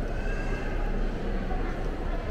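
Indoor mall ambience: a steady low hum of ventilation and background murmur, with a short, faint high-pitched gliding cry about a quarter second in.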